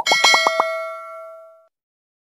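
Notification-bell sound effect from a subscribe animation: a click, then a quick run of about six bell strikes, and the chime rings out and fades over about a second.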